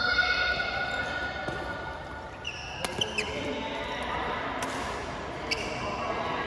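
Badminton rally: court shoes squeaking on the synthetic floor, loudest right at the start, then sharp clicks of rackets striking the shuttlecock, several close together about three seconds in and a few more later.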